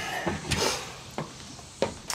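A short rustle about half a second in, then two light knocks, as someone walks across the garage floor and moves about.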